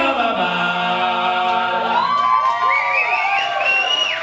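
Several voices holding a sung note without instruments, then high gliding whoops and yells from about halfway in, as a song closes.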